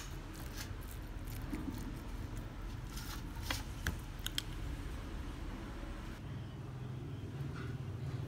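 A metal spoon stirring seasoned minced beef in a ceramic bowl: faint scraping with a few light clicks of the spoon on the bowl, dying away after about six seconds, over a low steady hum.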